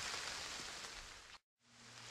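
Faint steady hiss with light crackling from a small campfire heating a metal bottle of water. It fades out to silence about one and a half seconds in, then fades back in at an edit.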